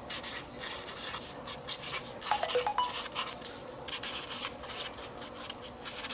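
A white pen scratching across a textured, acrylic-painted journal page in short, irregular strokes as words are hand-written.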